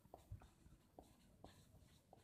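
Marker pen writing on a whiteboard: a handful of short, faint strokes.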